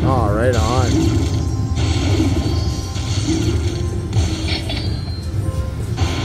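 Dollar Storm video slot machine playing its win count-up music and chimes while the bonus win meter tallies up. A wavering pitched tone sounds in the first second, over a steady low casino hum.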